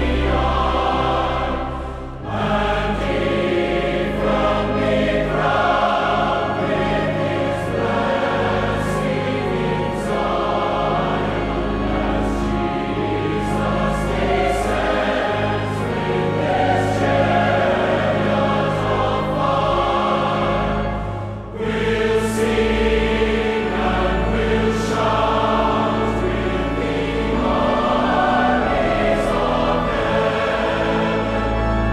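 Choir singing a hymn over sustained instrumental accompaniment, with short breaks between phrases about two seconds in and again about two-thirds of the way through.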